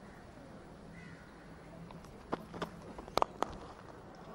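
Faint ground ambience with a few footfalls as the bowler runs in to the crease, then a single sharp crack of cricket bat on ball a little after three seconds in as the batsman drives the delivery.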